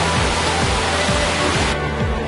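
Background music with a steady deep beat under a loud rush of rain, which cuts off suddenly near the end.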